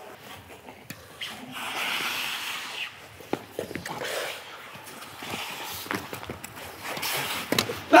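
Skates scraping across rink ice for about a second and a half, then scattered sharp knocks of sticks and ball on the ice.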